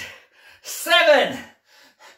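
A man's breathy, straining vocal effort with a falling pitch, once about half a second to a second in, from exertion during a resistance-band bicep curl.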